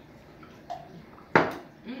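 A single sharp knock as a plastic drinking tumbler is set down on a kitchen countertop, dying away quickly.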